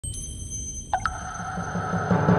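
Electronic intro music: high, steady tones, then two quick ringing pings about a second in that hang on, over a low rumbling bass.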